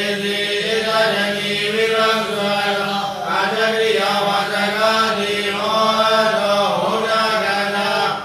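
A Buddhist monk's voice reciting continuously in a chanting cadence, close to the microphone.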